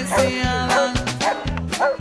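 Music with a steady beat, with a dog barking over it.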